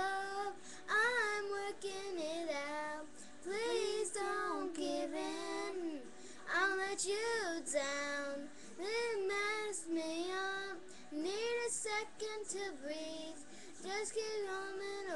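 A young girl singing a pop song in a high voice, phrase after phrase with bending, held notes and short pauses for breath about six and twelve seconds in.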